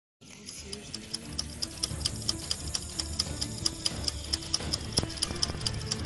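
Intro jingle: a clock ticking about four times a second over a low music bed, growing steadily louder.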